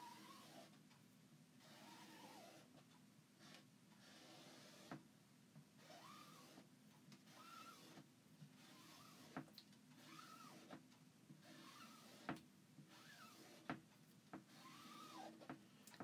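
Faint scraping of a squeegee being pulled through chalk paste across a silk-screen stencil, with short rising-and-falling squeaks every second or two and a few light clicks.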